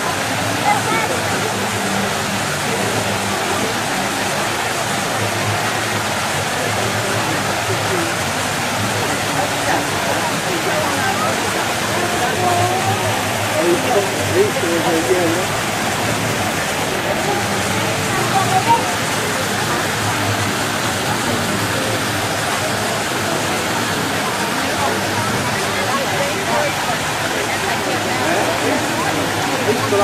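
Water of Bernini's Fountain of the Four Rivers splashing steadily into its basin, with the indistinct chatter of people around it mixed in.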